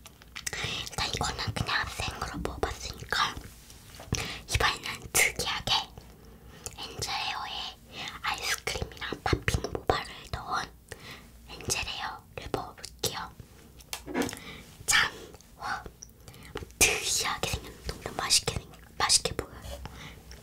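A girl whispering in Korean, talking steadily with short pauses.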